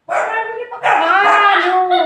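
A puppy barking: a short call, then a longer drawn-out one that drops in pitch at the end.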